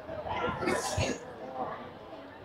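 A brief vocal sound from a person, much fainter than the sermon, lasting about a second with a hissy middle, then a short faint bit of voice.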